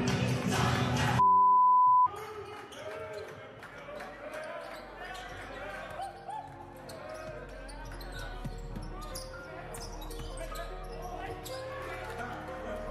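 Music cuts off about a second in and is followed by a loud, steady electronic beep lasting just under a second. After that comes live gym sound from a basketball game: the ball bouncing on the court, shoes squeaking and players' voices, all echoing in a large hall.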